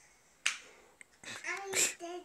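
A sharp click about half a second in and a fainter one near one second, followed by a young child's high voice near the end.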